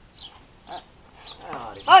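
A small bird chirping: short, high, falling calls about every half second. Near the end a louder, voice-like call rises.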